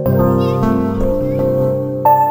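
Background instrumental music with held notes that change every half-second or so.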